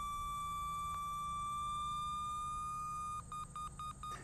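Schonstedt XTpc pipe and cable locator receiver sounding its tracing tone: a steady electronic tone that edges slightly higher in pitch as the signal strength climbs, then breaks into rapid pulsing beeps near the end. The tone's pitch is highest directly over the traced pipe or cable.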